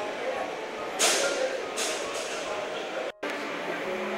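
Indistinct chatter of many people in a large hall, with a sharp clatter about a second in and a fainter one just after. The sound drops out for a moment near the end.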